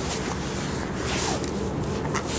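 Steady outdoor background noise, strongest in the low range, with a few faint short rustles of the probe cable being handled.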